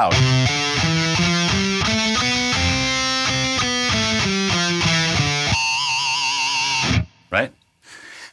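Electric guitar (ESP LTD M-1000HT) playing a quick run of distorted power chords, changing about two or three times a second. It then holds the last chord with a wavering vibrato before it cuts off about seven seconds in.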